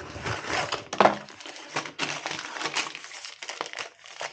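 Thin plastic wrapper of a hotel shaving kit being handled and pulled open, crinkling and crackling irregularly, with a few sharper crackles.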